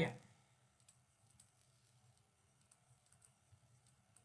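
A voice trails off at the very start, then faint, scattered light clicks and taps of a stylus on a tablet as notes are handwritten.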